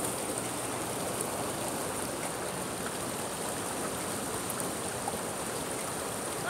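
Water running steadily in a small rock-lined stream.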